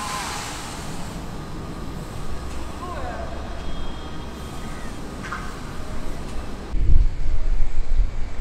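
Steady outdoor hiss with a few faint, distant voice-like sounds. About seven seconds in it changes suddenly to a gusty low rumble of wind on the microphone.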